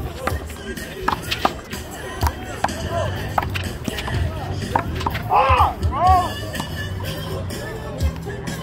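One-wall handball rally: sharp slaps of the small rubber ball off players' hands and the concrete wall, one every half second or so. There are a few short squeals a little past halfway, over background music.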